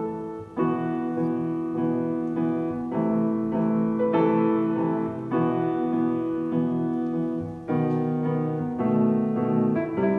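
Grand piano played solo: a classical piece in struck chords with sustained notes, with short breaks between phrases about half a second in and near the eighth second.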